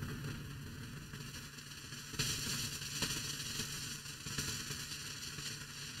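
Background line noise: a steady low hum under a hiss that grows louder about two seconds in, with a faint click about a second later.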